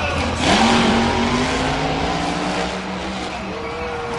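A monster truck's supercharged V8 revs hard about half a second in as the truck accelerates, then runs loud and steady at high revs, easing off near the end.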